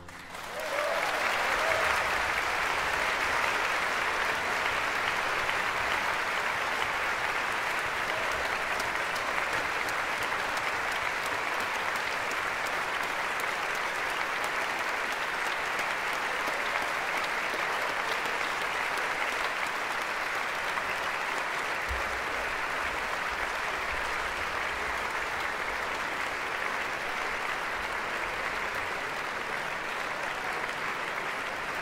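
Concert audience applauding, rising in the first second or two and then holding steady.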